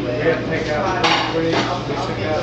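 Crockery and cutlery clinking in a coffee shop, with a sharp clatter about a second in.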